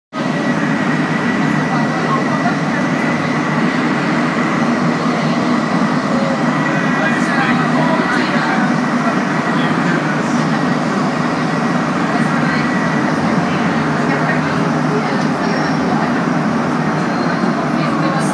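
Inside a Montreal metro Azur (MPM-10) rubber-tyred train running through a tunnel: a steady, loud roar, with a thin high whine over it that fades out about two-thirds of the way in.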